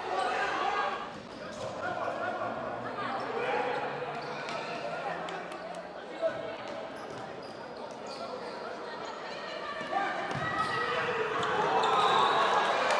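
Futsal being played in a reverberant gym: players and spectators shouting indistinctly, with short knocks of the ball being kicked and bouncing on the hard court. One sharp knock stands out about six seconds in.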